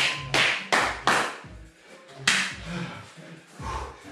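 A few hand claps, three in quick succession in the first second and one more near the middle, over background music.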